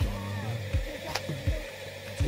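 Background music with held low notes and a steady low drum beat, plus one sharp click a little over a second in.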